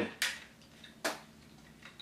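Two short plastic clicks from the NBK-01 Scraper transforming robot toy's parts being moved in the hands, one just after the start and another about a second in.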